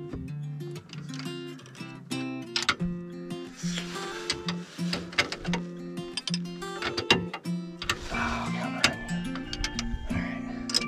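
Background guitar music with steady plucked notes. Over it come a few sharp metallic clicks and clanks from a wrench working the lower shock-mount bolt.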